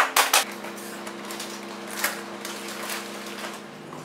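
Plastic food tray of raw chicken wings being handled: a few crackly clicks at the start and a single light knock about two seconds in, over a steady low electrical hum.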